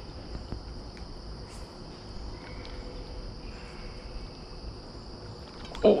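A steady, high-pitched insect chorus drones on without a break, with a faint low rumble underneath.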